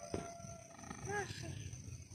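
A faint, short growl-like vocal sound about a second in, from a person voicing the spirit's reply, over a faint steady hum.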